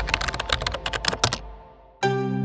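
A rapid, irregular run of sharp clicks, like keyboard typing, for about a second and a half, over a low hum that dies away; it then fades out.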